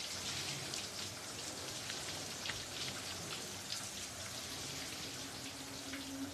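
A shower running: a steady spray of water pattering on a tiled stall. A low steady tone comes in near the end.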